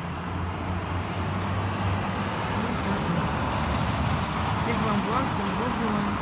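Road traffic: a motor vehicle running on the street, a steady rush of noise with a low engine hum in the first two seconds, the noise swelling a little toward the end.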